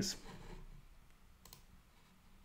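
The last of a man's spoken word trails off at the start, leaving faint room tone with a single faint click about a second and a half in.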